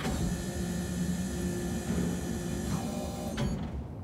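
Lift's sliding doors closing: a steady motor whine with a low hum, stopping abruptly about three and a half seconds in.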